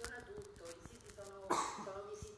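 A single cough close to the microphone about one and a half seconds in, over a speaker's voice faint in the background.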